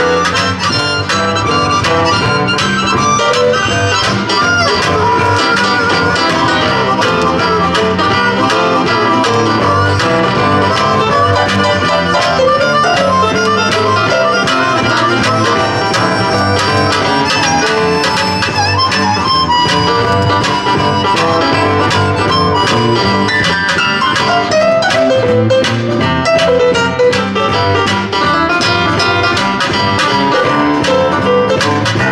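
Live blues band playing an instrumental passage: harmonica played into a microphone leads over strummed acoustic guitar and electric bass.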